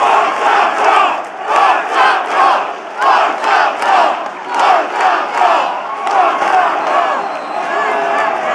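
Football crowd in the stands chanting and shouting together in rhythm, about two shouts a second, celebrating a goal that has put their team ahead.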